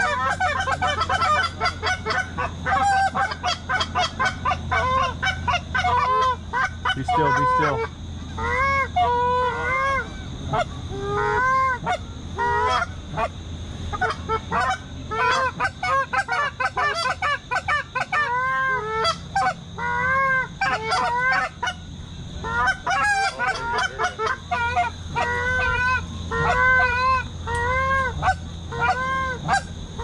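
Canada geese honking, many short calls in quick succession and overlapping, over a low steady hum.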